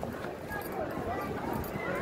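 Indistinct voices of people talking nearby over steady outdoor background noise.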